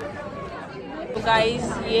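Background chatter of many voices in a large hall, with a woman starting to speak a little over a second in.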